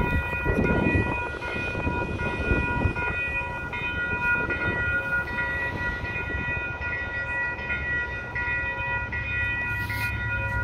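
Railroad crossing warning bell ringing steadily while the crossing is activated for an approaching trolley, over a low rumble.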